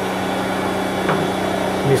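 ZELMER electric meat grinder running steadily with a sausage-stuffing nozzle fitted, a constant motor hum.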